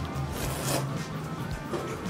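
A long slurp of thick ramen noodles, a hissy sucking sound lasting about half a second, starting about half a second in, over background guitar music.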